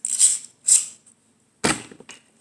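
Plastic Beyblade tops being handled and lifted out of a plastic stadium: two short scrapes, then a sharper clack about one and a half seconds in.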